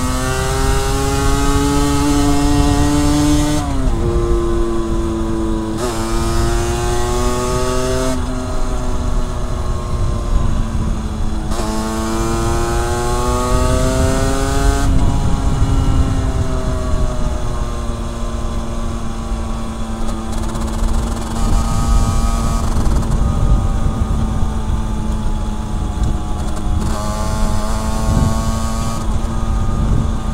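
Motorcycle engine accelerating through the gears: its pitch climbs and drops back at each shift, several times in the first fifteen seconds. It then eases off and runs at a steady pitch, with wind rushing underneath.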